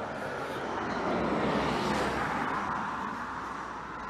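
A car driving past on the road, its noise swelling to a peak about two seconds in and then fading away.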